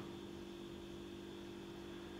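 Room tone: a steady low hum with a few constant tones over faint hiss.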